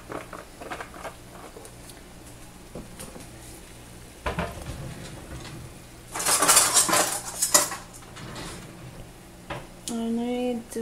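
Metal kitchen utensils and cookware clattering: a single knock about four seconds in, then a louder stretch of rattling and clinking for about a second and a half from around six seconds.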